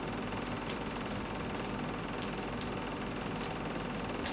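Scissors snipping through a sanitary pad, a few faint, irregular snips over a steady background hiss.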